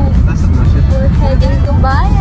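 A voice singing with music, over the steady low rumble of a car cabin on the move.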